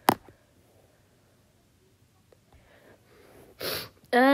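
A person with a cold sneezing once, short and sharp, at the very start, then sniffing briefly near the end.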